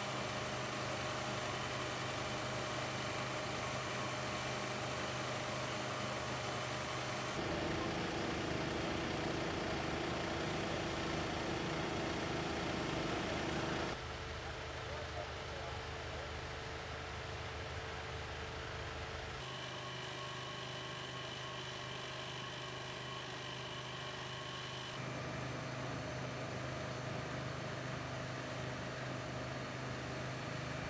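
Steady hum of idling emergency-vehicle engines and running rescue equipment, each stretch carrying a few held tones. The pitch and level change abruptly four times as the recording cuts between spots.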